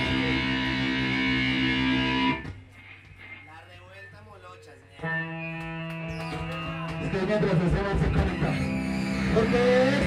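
Live rock band with distorted electric guitar: a loud held chord cuts off about two seconds in, leaving a few seconds of quieter voices. Then the guitar comes back with a new held chord at about five seconds, and the full band builds louder from about seven seconds, with a voice starting near the end.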